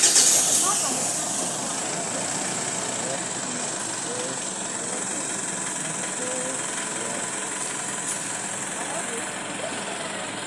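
A steady outdoor hiss, loudest in the first second before settling, with faint voices in the background.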